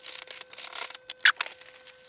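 Round needle file scraping back and forth in the edge of a thin wooden centering ring, cutting a half-round notch, with one sharper scrape a little past the middle.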